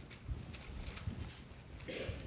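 Bible pages being leafed through at a pulpit: light paper rustles with a few soft, irregular thuds of the book being handled.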